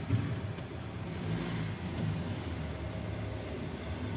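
Steady street background with a low engine hum from a motor vehicle running nearby.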